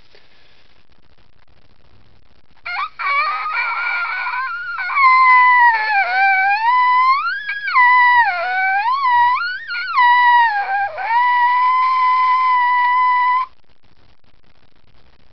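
Trumpet mouthpiece buzzed on its own, with no horn. A few seconds in it starts rough and airy, then settles into a clear pitched buzz that slides down and back up in several glides. It ends holding one high note steady and cuts off shortly before the end.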